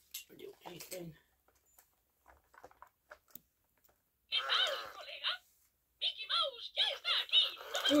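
Animatronic Spanish 'Baila y Baila' Mickey Mouse toy talking in its high-pitched Mickey voice through its small speaker, starting about four seconds in after a few faint clicks, pausing briefly, then going on.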